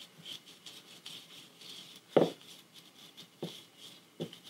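Small paintbrush dabbing and stroking paint onto a carved wooden figure: soft, light scratchy strokes, a few each second.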